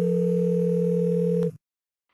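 Steady electronic telephone tone, a held dial-type tone that cuts off suddenly about one and a half seconds in.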